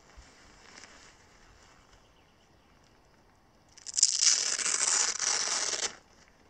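Hook-and-loop (Velcro) strip on the Terra Nova Laser 20 Elite backpack's top collar being pulled apart: a loud rasping tear lasting about two seconds, starting about four seconds in, after quiet handling of the fabric.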